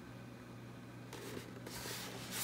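Faint rubbing and scraping of hands on a cardboard model-kit box as it is handled and turned, growing from about halfway through, over a low steady hum.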